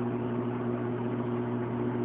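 Aquarium pump humming steadily, with a low even hiss behind it.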